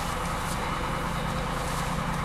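Crane engine running steadily, a constant low hum with an even noisy wash over it, while the crane lowers the tree's root ball.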